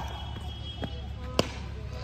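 A cricket bat striking the ball once, a single sharp crack about one and a half seconds in, a hit that goes for a six, with a fainter knock about half a second before it.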